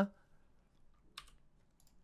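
Near silence broken by a few faint clicks of computer keys being pressed. The clearest comes about a second in.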